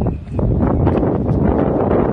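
Wind buffeting the microphone: a loud, steady rushing noise with a brief lull just after the start.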